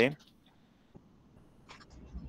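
A spoken word ends right at the start, then near silence, broken by one faint short click a little before the end.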